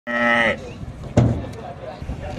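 A cow's short moo, lasting about half a second, followed a little over a second in by a single sharp knock.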